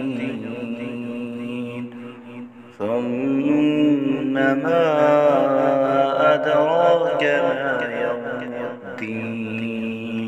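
Quran recitation (tilawat): a single voice chanting Arabic in a slow, melodic style with long held, ornamented notes. A short pause for breath comes about two seconds in, then the next phrase begins louder.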